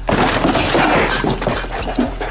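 A loud crash of breaking glass, lasting nearly two seconds.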